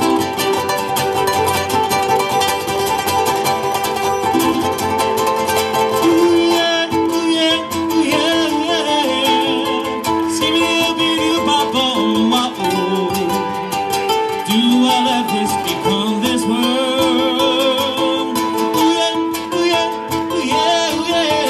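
Live acoustic music from ukulele and guitar played through a small PA, steady plucked and strummed chords, with a wordless wavering vocal line joining from about six seconds in.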